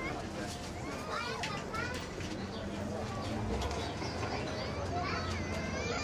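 Coffee shop background ambience: many overlapping, indistinct voices chattering, some of them high-pitched, over a low steady hum.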